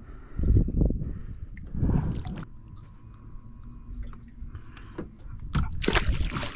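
Water splashing as a small hooked catfish thrashes at the side of a boat, with a loud splash near the end as it is unhooked over the water. Dull low thumps come about half a second and two seconds in.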